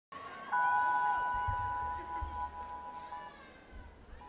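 A synthesizer chord of steady, pure tones, with a sliding tone leading into it about half a second in. The chord is held and stops a little past three seconds, with a few soft low thumps beneath it.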